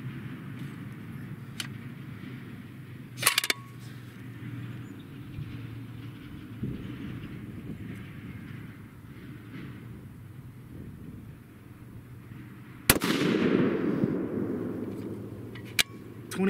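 A single shot from a custom 7mm PRC rifle with a muzzle brake about thirteen seconds in, its report echoing away over the next two seconds. The rifle is firing a hot handload that is showing pressure signs. A short clatter of clicks comes a little over three seconds in, and one more click comes just before the end.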